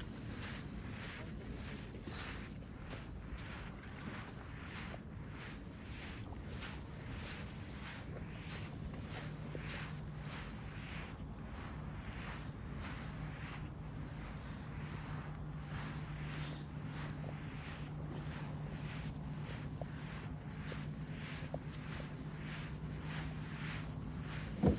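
Footsteps crunching on damp river sand at a steady walking pace, under a constant high-pitched insect buzz. A low steady hum joins about a third of the way in.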